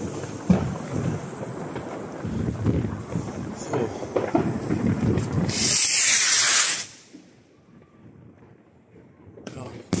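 A large firework rocket, a Piromax Bazooka C (168 g), launching. About five and a half seconds in, its motor lets out a loud hiss lasting about a second as it lifts off, then it goes quiet as the rocket climbs away.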